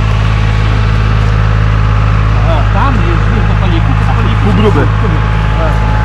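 A heavy machine's diesel engine idling with a steady low hum, with people talking over it.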